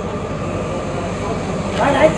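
Steady low drone of an engine running, over a wash of outdoor noise.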